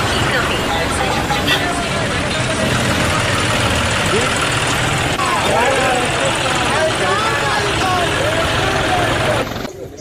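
Vehicle engine running at idle, a steady low hum, with several people's voices talking over it. The sound drops off abruptly just before the end.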